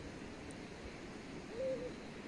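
A bird giving a short, low hooting call near the end, over faint steady background noise.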